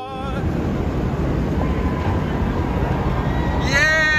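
Rumbling outdoor noise of boat motors and wind on the microphone on open water, with a voice calling out near the end.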